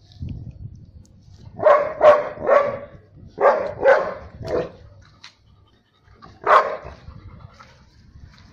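Yellow Labrador-type dog barking in two runs of three quick barks, then one more bark a couple of seconds later.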